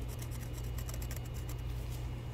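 Faint, rapid scratching of alignment marks being made on the metal vane ring and turbine housing of a variable geometry turbo, over a steady low hum.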